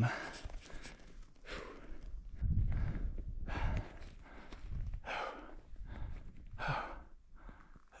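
A climber breathing hard from exertion at high altitude: a string of heavy breaths, roughly one every second or second and a half.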